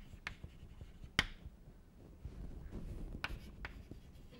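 Chalk writing on a chalkboard: four short, sharp taps of the chalk against the board, the loudest about a second in and two close together near the end.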